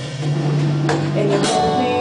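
Band rehearsal music: a strummed guitar with drums, in the gap between sung lines of the song.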